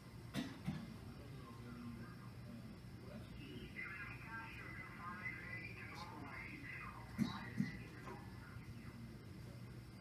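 Receiver audio of a homebrew BITX SSB transceiver being tuned across the 17-metre band, played back into a room: a steady hiss, with garbled, off-tune sideband voices drifting through in the middle. A few sharp clicks, two near the start and two about seven seconds in.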